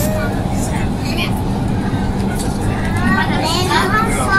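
Steady running rumble of a driverless metro train heard inside the front car, with a brief tone dipping in pitch at the start. A child's voice comes in near the end.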